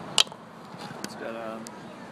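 The plastic cap of a BodyArmor SuperDrink bottle being twisted open, its seal cracking with one sharp snap just after the start, followed by a couple of fainter clicks.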